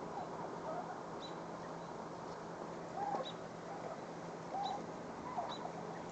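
Faint outdoor ambience with short, high bird chirps every second or two and a few brief lower calls, over a low steady hum.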